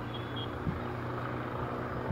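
Steady low hum under a haze of outdoor background noise, with two short high beeps near the start and a soft knock a moment later.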